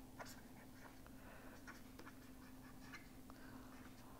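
Near silence: a faint steady hum of room tone, with a few faint, scattered ticks of a stylus writing on a pen tablet.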